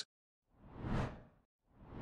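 Two whoosh sound effects of an animated graphic, each swelling up and fading away in under a second: the first about half a second in, the second near the end.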